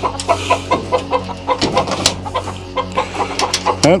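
Game chickens clucking and cackling in quick, short repeated calls, several a second: the alarm cackling that a snake near the coop sets off. A steady low hum runs underneath.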